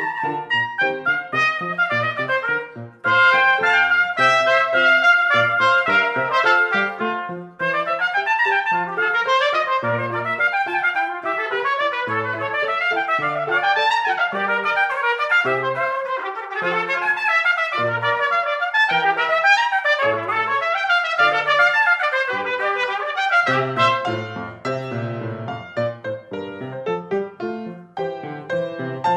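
Two trumpets playing a duet over piano accompaniment, in quick runs of short notes.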